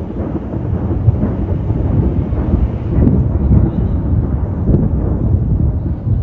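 Continuous low rumble of distant artillery shelling, swelling and fading.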